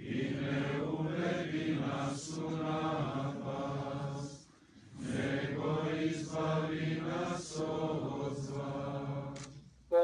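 A group of male voices chanting a slow liturgical hymn in unison, in two long phrases with a short pause for breath about four and a half seconds in.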